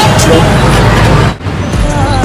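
Busy city street traffic noise with people's voices, broken by a sudden drop about one and a half seconds in. Music comes in near the end.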